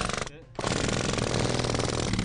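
Jackhammer hammering into the rock face of a mine tunnel in a rapid, even stream of blows. It stops briefly about a third of a second in, then starts again.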